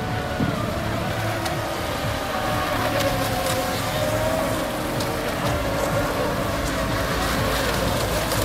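Radio-controlled racing boats running flat out around a buoy course, their motors making a steady high whine whose pitch wavers as they turn.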